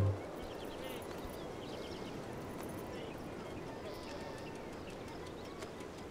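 Faint open-air beach background: a steady low hiss with faint distant voices and a few light scattered clicks.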